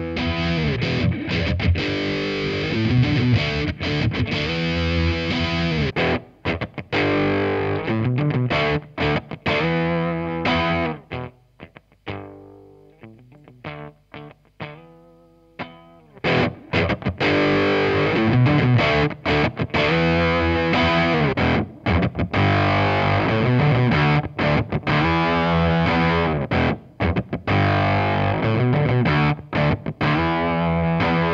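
Electric guitar (Stratocaster, pickup position 2) played through a Behringer TM300 Tube Amp Modeler into a Fender Hot Rod Deluxe III amp, giving a distorted tone. The playing stops about 11 seconds in and rings away for a few seconds. About 16 seconds in it starts again through a Behringer VT999 Vintage Tube Monster vacuum-tube overdrive, also distorted.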